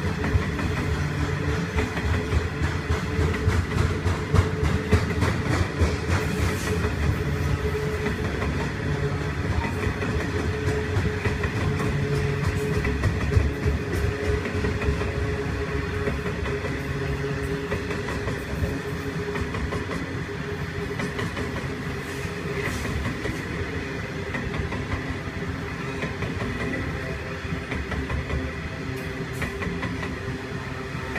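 A long coal train of hopper wagons rolling past close by: a steady rumble with the clickety-clack of wheels over the rail, and a faint steady whine above it. It eases off slightly toward the end.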